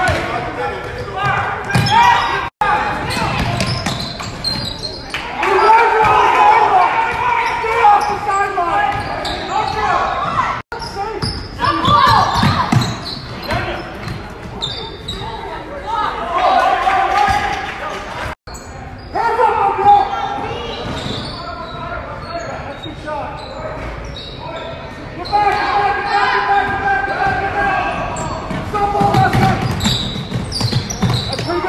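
Game sounds in a large gym during a youth basketball game: players' and spectators' voices and shouts, with a basketball bouncing on the hardwood floor. The sound cuts out for an instant three times, where clips are joined.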